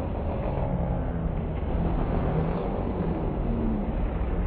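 A pack of banger racing cars' engines running together as they race round the track, a dense low rumble with engine notes rising and falling.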